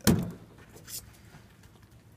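A sharp knock at the start and a lighter clack about a second in, from a knife and a salmon fillet being handled on a cutting board.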